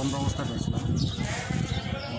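Men's voices talking close by, one of them rough and gravelly.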